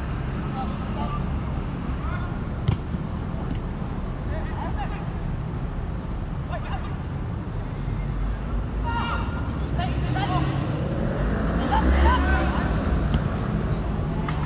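Players' scattered calls and shouts across a small-sided football pitch over a steady low background rumble, with one sharp knock a few seconds in; the shouts pick up near the end.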